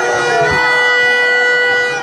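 A loud, steady horn tone held at one unchanging pitch, cutting off sharply at the end, over the hubbub of a festival crowd.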